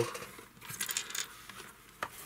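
A tape strip of small electrolytic capacitors being picked up and handled. Their cans and wire leads give a short run of light, jingly clicks and rattles lasting under a second.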